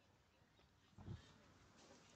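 Near silence: faint outdoor background, broken by one brief low thump about halfway through.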